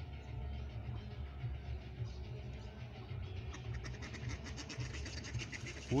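Mallards dabbling and splashing in shallow water at the pond's edge, with a fast run of sharp splashy ticks building over the last couple of seconds as two ducks start to scuffle. A steady low rumble lies underneath.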